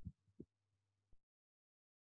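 Near silence, with a few faint low thumps in the first second or so, then nothing.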